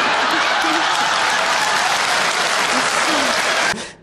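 Studio audience applauding after a joke's punchline; the clapping is loud and steady and stops abruptly just before the end.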